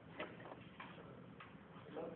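Three faint clicks about half a second apart from a white tabletop machine being worked by hand.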